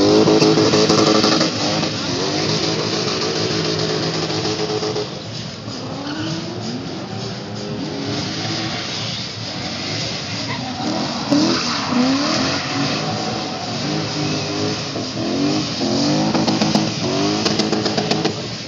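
Drift cars' engines revving hard, the pitch climbing and dropping again and again as the throttle is worked, over the hiss of tyres sliding and squealing. It is loudest at the start, with another burst of revving about eleven seconds in.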